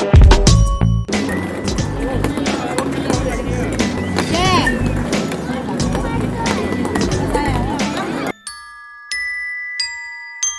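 Busy night-market sound: music with a steady beat over crowd chatter. It cuts off abruptly near the end, leaving a few sustained, clear ringing notes.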